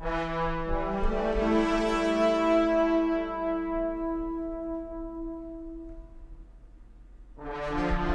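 Sampled brass ensemble from Native Instruments' Brass Ensemble Kontakt library playing a sustained chord, with notes entering one after another over the first second or so. The chord is held, then dies away around six to seven seconds in, and a new chord starts near the end.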